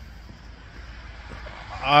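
Low, steady outdoor background noise with no distinct events, then a man's voice starting near the end.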